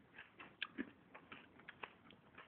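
Faint, irregular light clicks of a metal spoon tapping and scraping against a bowl as soft food is scooped.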